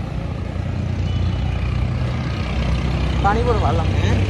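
Low, steady engine rumble of street traffic that grows louder over the first second or two, with a short burst of voice about three seconds in.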